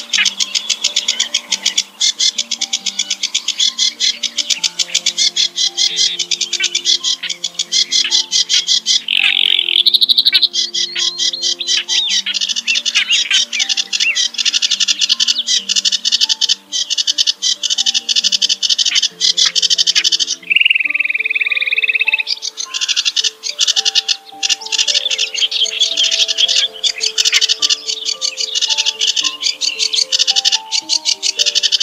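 Reed warbler song: a fast, harsh, unbroken chatter of scratchy, croaking notes, with one drawn-out whistle about two thirds of the way through. Soft background music of slow, stepping notes plays underneath.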